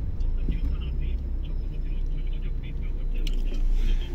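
Low, steady engine and tyre rumble heard inside the cabin of a Suzuki Swift with its 1.3-litre petrol four-cylinder, the car rolling slowly.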